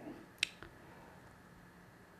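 Faint steady hiss of a hot-air rework station blowing at low airflow onto a chip to reflow its solder, with one short sharp click about half a second in.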